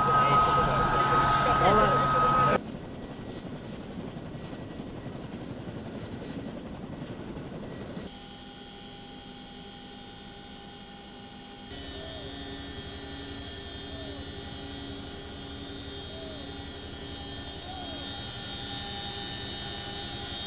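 Military helicopter engine and rotor drone heard from inside the cabin in flight, steady and droning with several constant tones. The sound changes abruptly a few times, and the first two and a half seconds are much louder, with a steady high whine.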